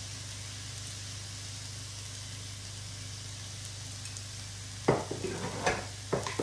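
Rice and garlic frying in a nonstick pan, a steady sizzle. About five seconds in, a sharp knock starts a run of quick clicks and taps against the pan.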